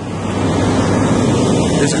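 Wind buffeting the microphone, a loud rushing that swells over the first second and then holds. Under it runs the steady low running of the concrete pump truck.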